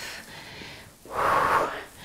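A woman's single loud, breathy breath lasting just under a second, about halfway through, from the effort of a cardio exercise.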